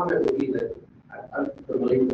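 Indistinct speech: a voice talking in two short stretches with a brief pause about a second in, the words not made out.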